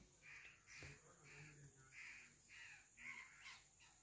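Near silence with a faint bird call repeated about twice a second in the background.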